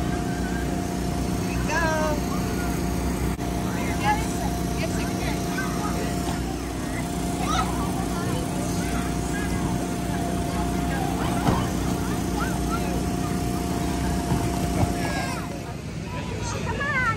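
Steady hum of an electric blower keeping an inflatable water slide inflated, with children's shouts and chatter coming and going over it.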